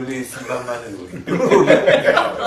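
A man talking and chuckling, his voice breaking into laughter that grows louder in the second half.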